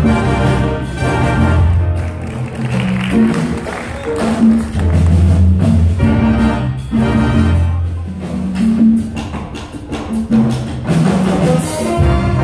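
A jazz big band playing live: saxophones, trumpets and trombones over piano and electric guitar, with a strong bass line and percussion strokes.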